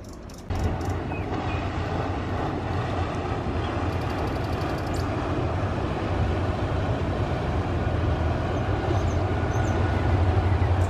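Low, steady diesel engine rumble of a passing inland tanker ship, with the wash of river water, starting suddenly about half a second in and slowly growing louder as the vessel comes closer.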